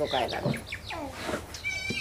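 Small birds chirping in short quick notes, with a high, held animal call near the end.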